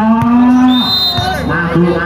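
A man's voice calls out one long drawn-out note, then breaks into speech. A short, high whistle tone sounds about a second in.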